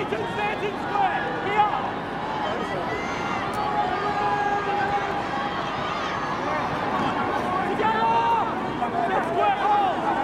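Stadium crowd at a rugby league match: many voices shouting and calling out at once, a steady overlapping din with some held calls.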